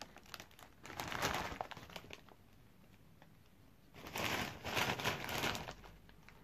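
A foil-lined crisp packet crinkling as it is handled, in two spells: one about a second in and another about four seconds in, with a quiet stretch between.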